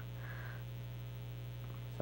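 Steady electrical mains hum on the audio line, a low constant drone with a brief faint breathy sound about half a second in.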